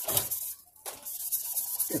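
A 320-grit abrasive pad on a fret leveling and crowning block, rubbed back and forth across the metal frets of a guitar neck. It gives a dry, hissy sanding sound in strokes, with a short lull about half a second in.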